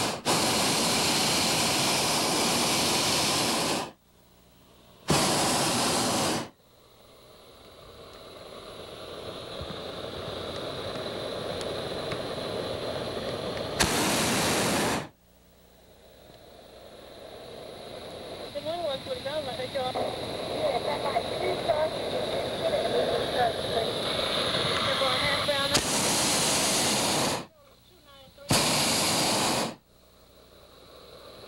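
A hot air balloon's propane burner firing in bursts: one long blast of about four seconds, then four shorter blasts of a second or two. Each starts and cuts off abruptly.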